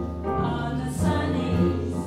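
Live jazz: a double bass and piano accompanying a woman singing, the bass notes moving every half second or so.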